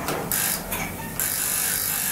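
Mechanism of a 1983 Geijer-Hissi hydraulic elevator working after a floor button is touched: a few short clicks, then a high hiss lasting about a second that cuts off.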